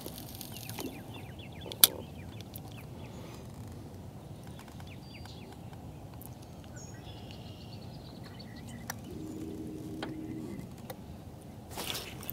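Quiet outdoor ambience on open water: a steady low rush with faint bird chirps, one sharp click about two seconds in, and a faint low hum near the end.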